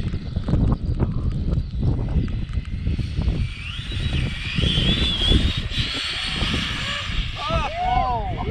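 Wind buffeting the microphone throughout. From about three and a half seconds in, a high electric motor whine from a speed-run RC car rises in pitch and wavers over a hiss of tyres on wet tarmac, fading out about seven seconds in. A voice calls out briefly near the end.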